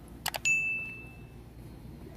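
Two quick clicks, then a single bright metallic ding that rings out and fades over about a second.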